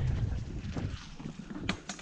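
Wind rushing on the camera mic and the mountain bike's tyres rumbling over the leafy trail, both fading steadily as the bike slows onto the road. A few sharp clicks come near the end.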